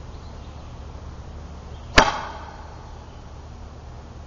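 Pneumatic antenna launcher firing once: a single sharp pop about halfway through as its stored air charge, set to about 25 PSI, drives the fishing-line projectile up out of the barrel, followed by a short ringing tail.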